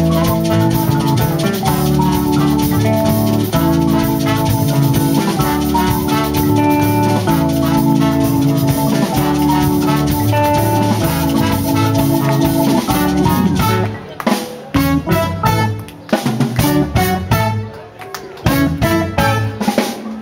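Live dance band playing: drum kit, keyboard, guitar, trumpet and trombone, with an mbira played inside a calabash resonator. Held horn and keyboard notes run over a steady beat, and about fourteen seconds in the music breaks into short, separated hits.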